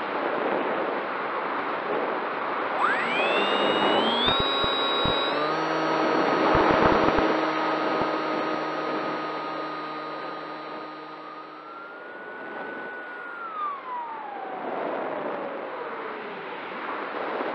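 Electric motor and propeller of a Bixler foam RC plane, picked up by its onboard camera over steady wind rush: the whine rises in pitch about 3 s in, steps up again and holds, then falls away near the end. A few sharp knocks come between about 4 and 8 s.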